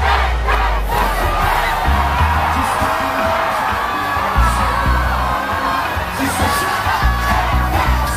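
A large concert crowd cheering and singing along over loud amplified live music with a heavy bass.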